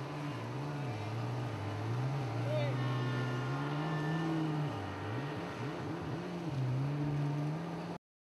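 Jet ski engine running close by, its pitch rising and falling as the throttle is worked, with a quick run of revs about five to six and a half seconds in.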